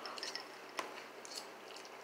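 Quiet slurping and chewing of noodles, with a few faint clicks.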